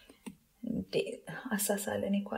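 Speech: a narrator talking in a soft voice, after a brief pause near the start that holds a couple of faint clicks.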